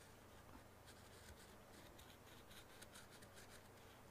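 Faint, irregular scratching of a pointed carving tool incising short strokes into underglazed clay.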